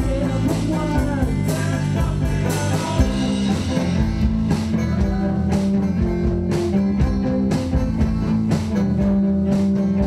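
Live band playing an instrumental break: a fiddle bowing the melody over strummed guitar, held bass notes and a steady beat of about two strokes a second.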